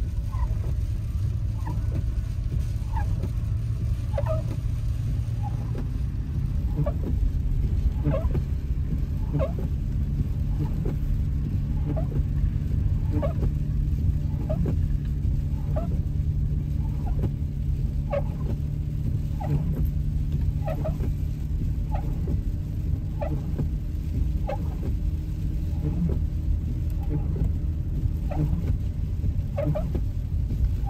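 Inside a car moving on a snow-covered road: a steady rumble of engine and tyres, with the windshield wipers squeaking across the glass about once a second.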